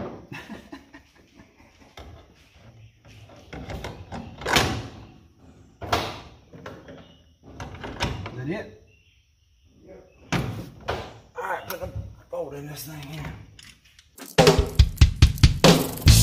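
Scattered knocks and clunks as a power brake booster is worked into place against a car's firewall, its pushrod being slid through toward the brake pedal. Rock music with a steady beat starts near the end.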